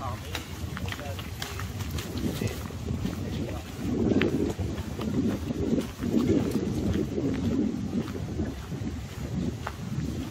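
Passers-by talking nearby, their voices loudest from about four to eight seconds in, over scattered footstep crunches on a gravel path.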